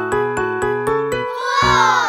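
Cartoon cat meow, one call rising then falling in pitch about a second and a half in, over a children's-song instrumental whose short notes climb step by step.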